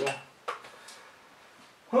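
Two sharp clicks about half a second apart from the front-panel controls of a Wanptek TPS605 bench power supply being switched by hand.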